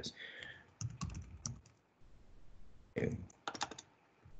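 Computer keyboard keystrokes and clicks, a short run about a second in and another near the end.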